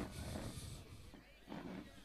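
Faint ground ambience: distant, indistinct voices of players and spectators with low background rumble.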